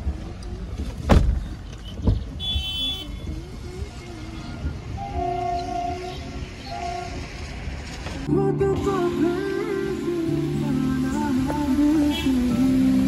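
Low rumble of a car driving, heard from inside the cabin, with a couple of sharp knocks in the first seconds. Background music comes in and carries the sound from about eight seconds in.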